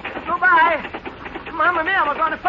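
A voice making two short wordless exclamations that rise and fall in pitch, about half a second in and again near the end.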